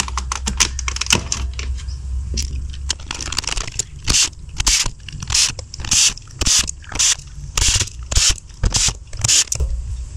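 Plastic Nerf blaster shell parts scraping and rubbing against each other as they are fitted and pressed together by hand: a run of short scrapes, about two a second, starting a couple of seconds in.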